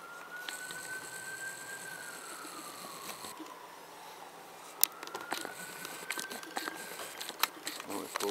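Faint emergency-vehicle siren in a slow wail, its pitch rising and falling twice. A sharp click about five seconds in.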